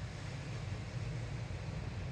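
Ocean surf heard from a distance as a steady, low rush of noise.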